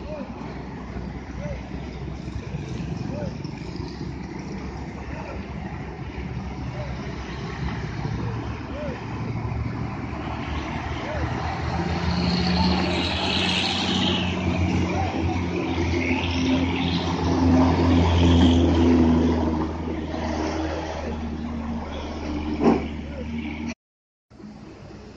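Diesel engines of heavy vehicles driving past at a bend: a Mercedes-Benz tour bus pulling away, then a Mitsubishi refrigerated box truck coming by close, its low engine hum building to the loudest point in the middle and easing off. A single sharp click near the end.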